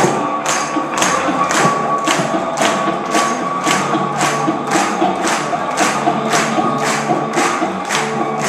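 A group of electric cigar box guitars playing a steady blues groove, with an audience clapping along on the beat, about two claps a second.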